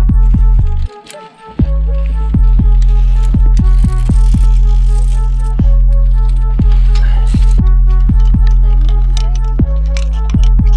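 Background music: an electronic beat with a deep, sustained bass and evenly spaced sharp percussion hits. The bass drops out for about a second shortly after the start, then comes back in.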